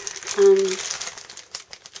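Clear plastic cellophane bag of scrapbook papers and embellishments crinkling as it is handled, with a run of sharper crackles in the second half.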